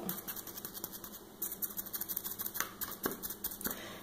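Foam sponge brush dabbing and pressing Mod Podge into fabric strips on a craft pumpkin: faint, irregular soft taps and rustles, several a second, with a few sharper clicks in the second half.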